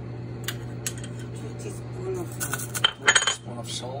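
A metal spoon knocking against a stainless steel stockpot while salt is added: a few light clicks, then a louder burst of ringing clinks about three seconds in.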